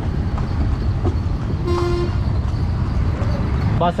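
A short, single vehicle horn toot about halfway through, over the steady rumble of a horse-drawn cart rolling along a busy street.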